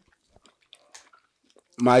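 Faint, irregular crunching of someone chewing a crunchy snack into a nearby microphone, in an otherwise quiet pause; a man starts speaking near the end.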